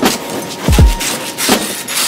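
An ice scraper rasping in strokes against an iced-over car window, over background music with a deep kick drum that drops in pitch on each beat.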